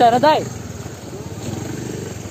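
An engine idling steadily with a low, even hum, after a brief voice call at the very start.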